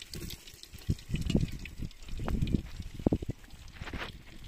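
Sliced onion sizzling as it is dropped into hot oil in a clay handi over a wood fire, under several irregular low thumps.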